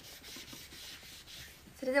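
Soft, faint rubbing and rustling from handling close to the microphone as she moves her hands and arms. Near the end a girl's voice starts speaking.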